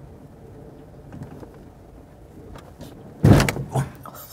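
Car heard from inside the cabin: a steady low running noise with a few faint clicks, then two loud thumps about half a second apart near the end.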